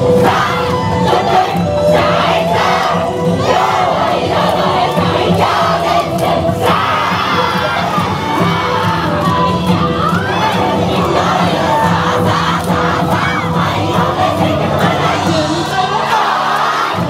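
A large yosakoi dance team shouting calls together over loud dance music.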